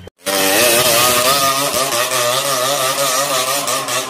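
Motorcycle engine running hard, its pitch wavering up and down as the throttle varies, over a loud rushing noise. It starts abruptly a moment in.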